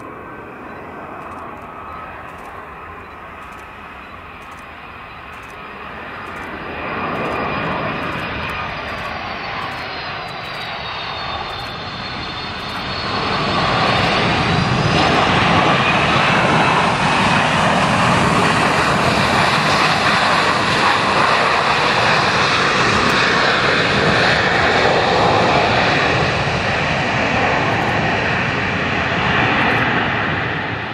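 Boeing 757-200 jet engines on landing: a high whine on the approach that dips in pitch and rises again, then a loud steady roar from about halfway as the jet lands and rolls down the runway, easing off near the end.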